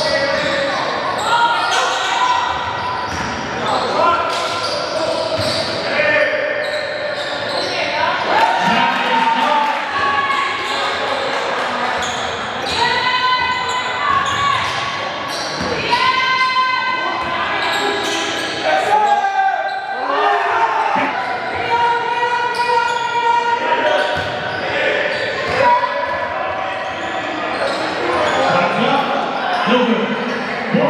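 Live basketball game sound in a large gym: the ball bouncing on the court and short high-pitched sneaker squeaks, with players and coaches calling out, all echoing in the hall.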